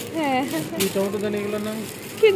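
A person speaking, with a brief click a little under a second in.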